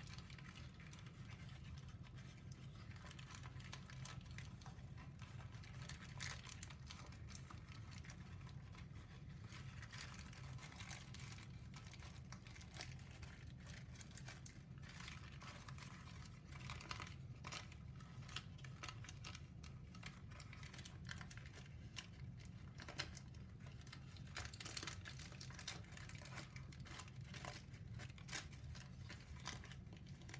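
Sheet of brown paper, folded into many layered pleats, crinkling and crackling in irregular small bursts as the hands squeeze and shape it, over a steady low hum.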